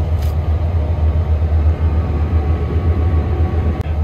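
2023 Gleaner S98 combine harvester running steadily under load while harvesting a heavy crop, heard from inside the cab as a loud, steady low drone with a faint whine above it.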